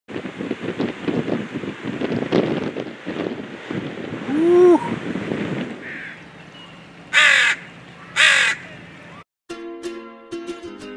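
Surf washing on the shore, with one low arching call about halfway. Then a crow caws twice, loud and harsh, about a second apart. Ukulele music starts just before the end.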